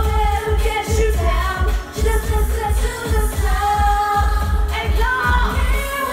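Live pop dance music played loud through a stage PA, with a singer's voice over a heavy, steady bass beat.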